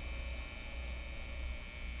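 A steady high-pitched whine over a low hum, unchanging throughout.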